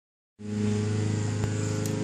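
A steady mechanical hum on a fixed pitch sets in about a third of a second in, with a faint click near the middle.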